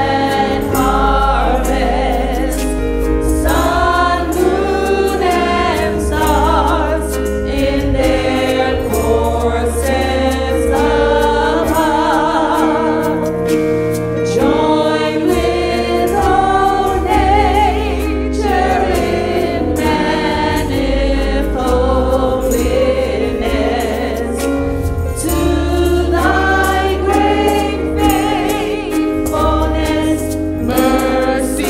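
Gospel praise-and-worship team singing in harmony into microphones, over a Yamaha MODX6 synthesizer keyboard playing chords and a sustained low bass.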